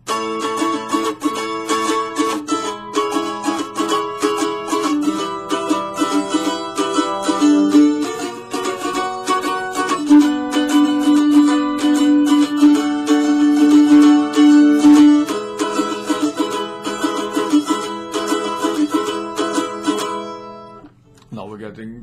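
Mandolin chords strummed in a fast, steady rhythm, changing chord every few seconds, with the strumming stopping about a second before the end.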